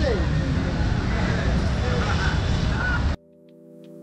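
Night street ambience while walking: a steady low rumble of traffic with faint voices, cut off abruptly about three seconds in, where a quiet lo-fi background music track begins.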